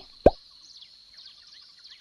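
A single cartoon plop sound effect about a quarter second in: a short pop whose pitch drops steeply. It accompanies the turtle nudging the egg.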